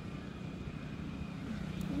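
A vehicle engine's low, steady hum, growing a little louder near the end.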